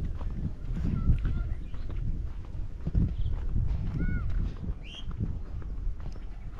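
Footsteps on a dirt path, a short knock roughly every second, over a steady low rumble. A few brief bird chirps come in between.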